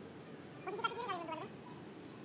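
A single drawn-out vocal call, rising and then falling in pitch, starts just over half a second in and lasts under a second.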